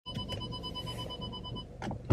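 Rapid electronic beeping, about ten short high beeps a second, that stops shortly before the end. It is typical of an electronic warning beeper, heard inside a car cabin. Two light clicks come at the very start.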